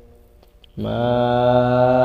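Quran recitation (tilawat): after a short pause, the reciter's voice comes in about three-quarters of a second in on a long, steady held note on the word 'mā', drawn out in the chanted style.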